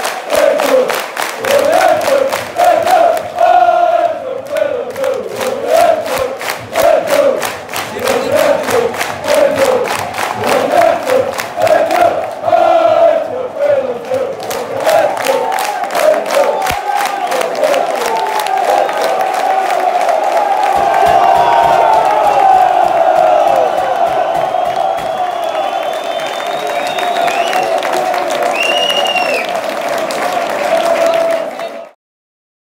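Large crowd of football supporters chanting in unison to steady rhythmic hand clapping. About halfway through, the chant turns into longer held notes and the clapping fades.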